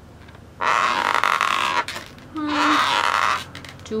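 Marker pen rubbing across the skin of an inflated latex balloon as small circles are drawn: two long scrapes of about a second each, with a short gap between them.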